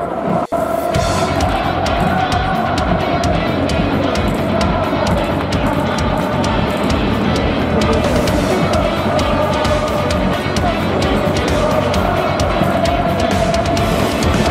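Background rock music with a steady, driving drum beat, with a brief dropout about half a second in.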